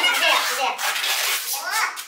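Duct tape being pulled off the roll as it is wound around a person, under talk from several people.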